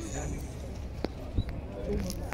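Outdoor ambience of distant voices over a steady low rumble, with two short sharp knocks about a second in.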